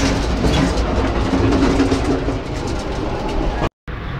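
Amtrak passenger train running along the line, heard from inside the cars: a steady low rumble of wheels on rail with rattling and a few clicks. The sound drops out completely for a moment near the end.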